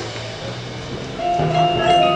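Marching band music: quiet held low notes, then a little over a second in the full band comes in louder with sustained chords.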